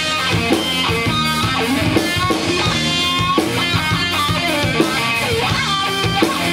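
A live metal band playing: electric guitar riffing over a drum kit, loud and steady throughout.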